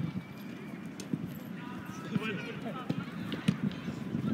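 Footsteps of several players running on artificial turf, with scattered short thuds and brief shouted calls from the players.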